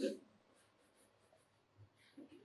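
Faint scratching of a coloured pencil shading on paper, in a quick run of light strokes.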